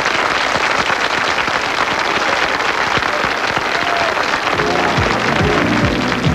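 Audience applauding steadily after a piano-and-orchestra number. About four and a half seconds in, the band starts playing again under the continuing applause.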